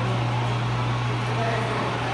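A steady low mechanical hum, unchanging in pitch, under faint indistinct chatter of people in a large hall.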